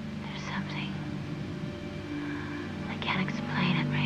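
Whispered voice in two short stretches, about half a second in and again near the end, over a low, steady drone.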